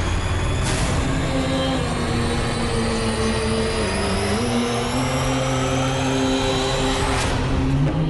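Cinematic intro soundtrack: held low drone notes that shift pitch, under a high rising sweep that climbs for several seconds and ends in a sharp whooshing hit about seven seconds in, with a similar hit just under a second in.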